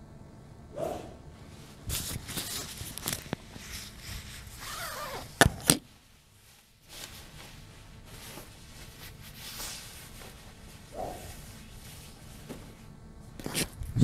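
Scattered shuffling and handling noises as a golfer resets over the ball on an indoor hitting mat, with a cluster of light clicks a couple of seconds in and a sharp double clack about five and a half seconds in, the loudest sound.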